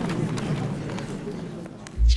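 Office ambience: a steady murmur of indistinct voices and room noise with a few sharp clicks, easing off slightly near the end.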